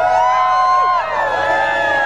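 A pack of sled dogs howling together, many voices overlapping in long calls that rise and fall in pitch.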